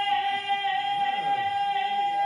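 A female jazz singer holding one long, high, steady note over the band's closing chord, the final note of the song.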